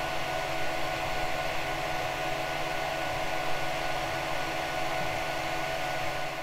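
A 3D printer running, its cooling fans giving a steady whir: an even hiss with a constant hum and a few steady tones.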